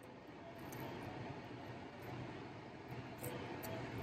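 Faint, steady low hum of a parked car's cabin, with a few soft clicks.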